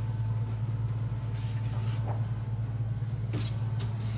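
A steady low machine hum, with a couple of faint knocks.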